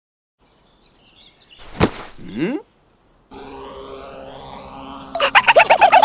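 Animated-cartoon sound effects. A short swish comes about two seconds in, then a steady hum from about halfway. Near the end, loudest of all, a fast run of short, bouncy, high chirps comes several times a second, from the small cartoon characters at play.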